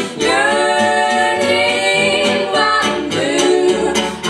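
Women's voices singing together in close harmony, with the band's accompaniment underneath; the singing breaks briefly just after the start before the next phrase.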